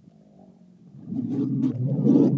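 Male camel's deep, low rumbling call, faint at first and swelling loud about a second in.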